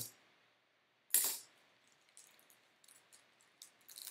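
A clear plastic card stand set down hard on a tabletop: one sharp clack with a brief ringing tail about a second in. Faint light clicks of cards being handled follow.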